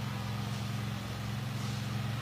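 Steady low background hum with no other sound standing out.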